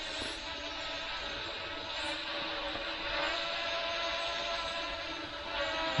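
Small F007 Pro quadcopter's motors and propellers giving a steady, high-pitched buzz while it hovers.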